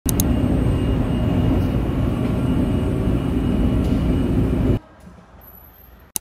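Subway train running, heard from inside the carriage: a loud, steady rumble of wheels and motors that cuts off suddenly near the end, leaving only faint room tone.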